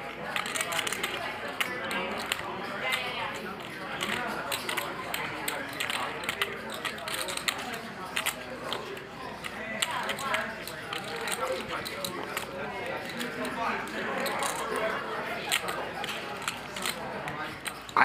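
Poker chips clicking as players handle and shuffle them at the table, many quick clacks scattered throughout, over a low murmur of chatter in the room.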